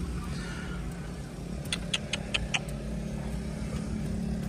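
A Toyota Corolla's engine idling with a steady low hum, and a quick run of five or six light plastic clicks a little under two seconds in as the loose centre dashboard panel and head unit are handled.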